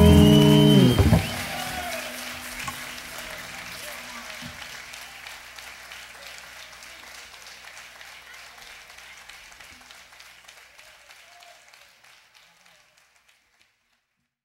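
A live band with cuatro and bass ends the song on a held final chord that stops about a second in. Audience applause and cheering follow and fade away to silence near the end.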